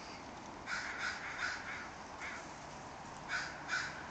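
Harsh bird calls outdoors. There are three in quick succession about a second in, a fainter one a second later, and two more near the end.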